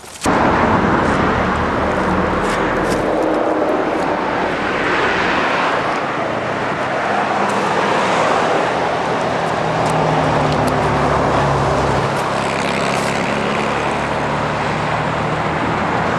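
Steady noise of road traffic, with a low hum running under it; it starts suddenly.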